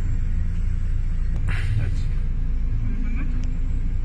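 Steady low engine rumble, with a short burst of noise about one and a half seconds in.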